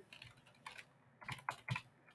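Computer keyboard typing: a handful of faint, irregular keystrokes.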